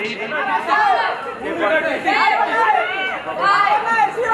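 A group of voices counting down aloud together, one number roughly every second, with a man's voice on a microphone among them.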